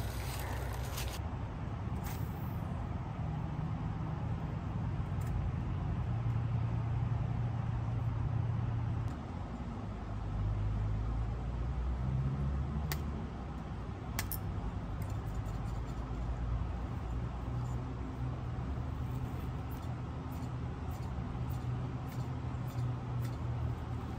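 Steady low rumble of outdoor background noise, with a few faint clicks a little past the middle.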